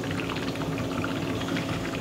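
Oxygen bubbling steadily through the water in a concentrator's bubble humidifier, over the running oxygen concentrator's low steady hum.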